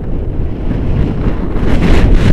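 Wind buffeting the camera's microphone from a paraglider's forward flight: a loud, rough rumble that grows louder toward the end.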